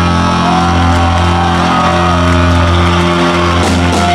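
Live heavy music: a distorted electric guitar chord left ringing at high volume, a steady low drone with a higher tone wavering above it, and no drums.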